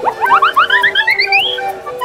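A cartoon comedy sound effect: a quick upward swoop, then a run of short rising chirps that climb higher and higher in pitch for about a second and a half, over light background music.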